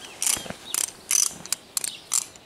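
A hand rubbing and scratching a horse's coat beside its eye, close to the microphone: a string of short, dry rasping strokes, about five in two seconds at uneven spacing.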